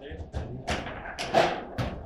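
Foosball table in play: the ball and the plastic players on the steel rods knocking, with rods banging at the table's sides, about six or seven sharp knocks in quick succession, the loudest near the middle.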